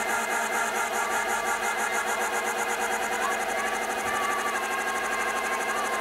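Afro tech electronic dance music with its bass cut away: sustained synth tones under a rapid, even high ticking of hi-hats.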